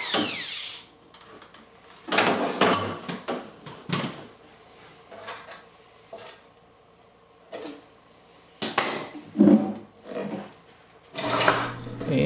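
A cordless drill's whine falling in pitch and stopping about a second in, then scattered knocks and clatter of metal hardware against the wooden cabinet as the TV slider is worked free, loudest about nine seconds in.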